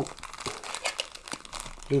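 A thin black plastic bag crinkling and rustling as it is handled and pulled open, with small irregular crackles.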